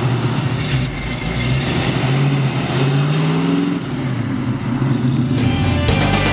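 A 1965 Ford Mustang's engine running as the car drives up, its pitch climbing and then dropping back midway. Rock music comes in near the end.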